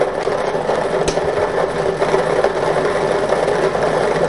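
Lottery ball draw machine running: a steady mechanical whir with the numbered balls churning and rattling inside its chamber, and a single sharp click about a second in.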